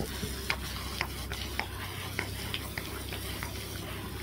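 Garden hose spraying water onto a horse's head and neck: a steady hiss of spray with irregular spattering ticks as the water hits the coat and wet ground.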